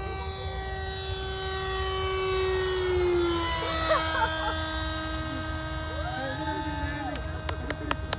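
Fixed-wing RC UAV's motor and propeller humming as it flies past overhead. The hum swells, then drops in pitch at about three and a half seconds as the plane passes by.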